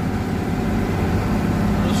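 Mercedes-Benz truck's diesel engine running in a steady low drone, heard inside the cab, under the hiss of heavy rain and wet road spray.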